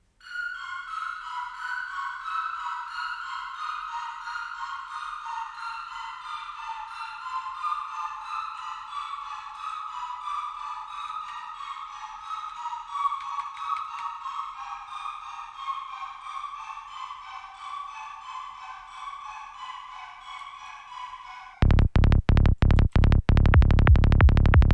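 Synthesized psytrance lead sequence of fast repeated notes, sliding slowly down in pitch under pitch-shift automation that lowers it by about five semitones. Near the end a much louder, fast-pulsing psytrance bassline kicks in.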